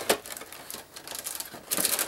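Cardboard cookie box being handled and opened: a sharp click just after the start and scattered small taps, then a dense crinkling rustle near the end as the packaging is pulled open.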